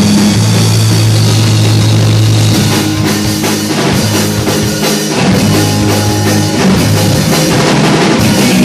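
A live rock band playing: electric guitar, bass guitar and drum kit together, loud, with long held low notes under steady drumming.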